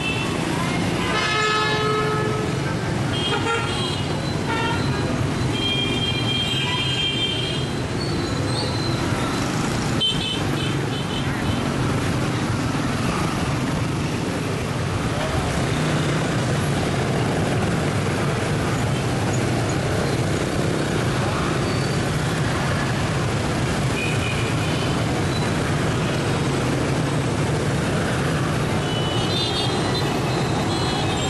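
Dense motor-scooter and car traffic running steadily, with short horn toots sounding repeatedly: a few close together in the first seconds, another around ten seconds in, and more near the end.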